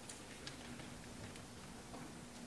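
Faint footsteps, a few scattered light taps, over a steady low hum of room tone.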